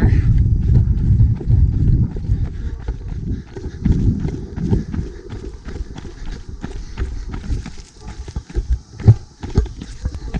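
A trail runner's footsteps on a dirt and stone path, picked up by a handheld camera. The camera jostles and its microphone rumbles in the wind, with one loud knock about nine seconds in.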